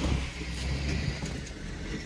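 Engine of a 2005 Chevrolet Silverado 2500HD pickup running while it plows snow with a rear plow: a steady low rumble that eases off about a second in.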